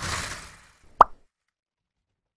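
Logo-animation sound effects: a short whoosh, then a single sharp pop about a second in.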